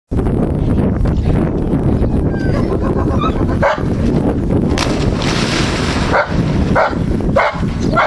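A dog barking a few short times, around a splash about five seconds in as the diving dog hits the pool water. Low wind rumble on the microphone throughout.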